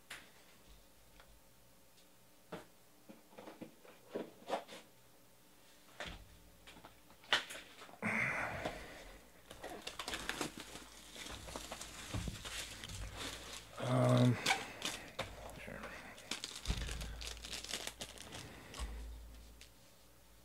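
Plastic wrap being torn and crinkled off a sealed trading card box as it is opened by hand, with a few light clicks and taps at first and a long stretch of crackling plastic from about 8 seconds in. A short pitched sound about 14 seconds in is the loudest moment.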